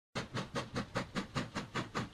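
Steam locomotive sound effect: an even, rhythmic chuffing of about five puffs a second.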